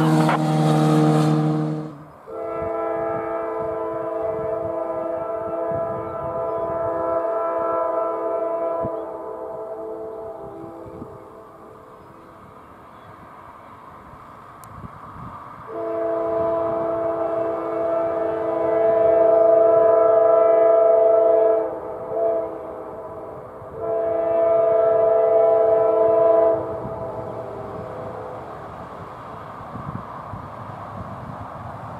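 A CSX diesel locomotive's multi-chime air horn sounds the grade-crossing signal over the low rumble of the approaching train. First comes a long sounding that tapers off. After a pause come a long blast, a brief blast and a final long blast.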